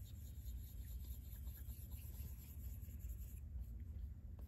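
Faint rubbing of an Apple Pencil tip sliding across an iPad's glass screen as it makes smoothing strokes, over a low steady hum.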